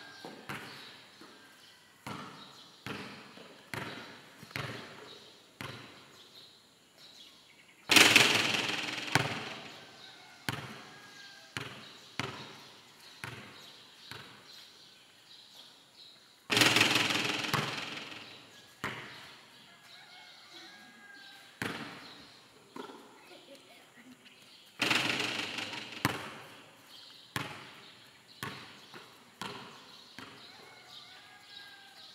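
A basketball bouncing repeatedly on a concrete court, with three loud crashes about eight seconds apart, each ringing out for a second or two: missed shots striking the metal backboard and rim, echoing under a steel roof.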